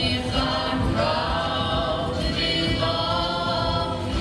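Several voices singing a Norfolk Island dance song together, holding long notes, over steady instrumental backing.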